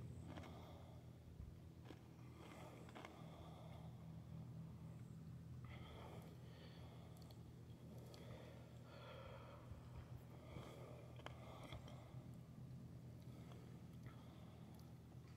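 Near silence: a faint steady low hum, with a few soft rustles and faint ticks.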